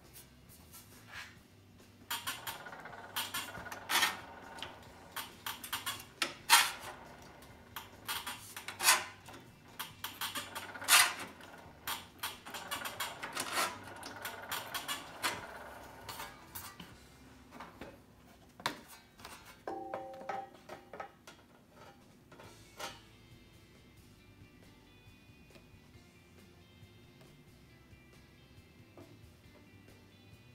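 Sharp, irregular metallic clanks and rattles as an 18-gauge steel panel is bumped and shifted in a sheet-metal shaping machine, strongest in the first half. After that it is mostly quiet, with faint background music near the end.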